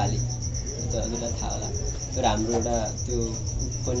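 A man talking over a steady, rapidly pulsing high-pitched chirp, like an insect, and a low steady hum.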